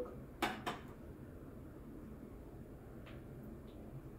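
Two quick metallic clinks about half a second in as a stainless steel milk jug is set down on a hard surface. After that it is quiet, with one faint tick later on.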